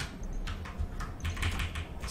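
Computer keyboard being typed on: a run of irregular key clicks over a low background hum.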